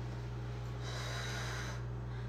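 One long breath, about a second, from a person vaping, over a steady low electrical hum.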